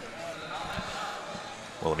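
Hall ambience of a roller derby bout: a low even background with a few soft thumps of quad skates working on the track floor. A voice starts near the end.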